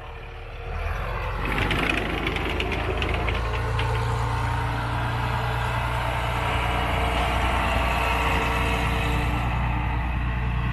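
Tsugaru Railway diesel railcar pulling away under power, its engine running loud and steady from about a second in. A quick run of clicks and rattles comes about two seconds in.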